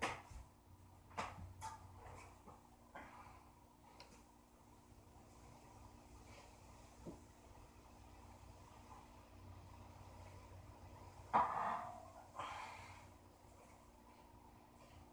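Quiet garage room tone with a steady low hum, a few small knocks and shuffles of a lifter settling onto a weight bench, then two short, forceful breaths a second apart near the end as he braces under the racked barbell before a heavy bench press.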